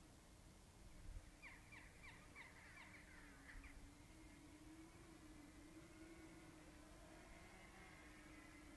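Near silence, with a faint run of short, quick bird calls, about four a second, from about one and a half to nearly four seconds in, over a faint steady low hum.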